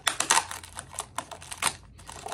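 Plastic mailer bag crinkling and crackling as it is pulled and torn open by hand: a quick run of crackles at first, then a few scattered ones.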